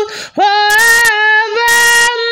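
A woman singing unaccompanied: a quick breath at the start, then one long held note.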